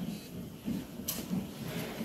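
Soft, irregular thuds of footsteps on a stage floor, about two or three a second, with one brief sharp noise about a second in.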